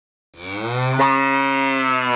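One long, low, pitched call that starts about a third of a second in and holds steady, with a low fundamental and many overtones.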